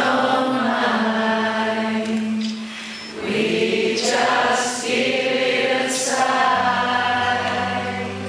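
Concert audience singing a melody together in phrases, as a crowd sing-along. About six and a half seconds in, a low sustained instrument note comes in under the voices.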